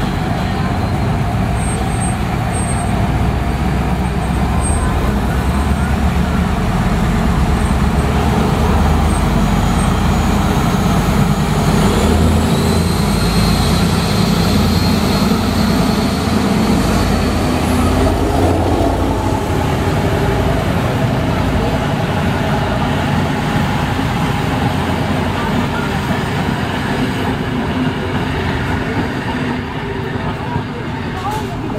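VR Class Dr13 diesel locomotive running loudly as it passes close by, its engine note rising partway through, followed by its passenger carriages rolling past.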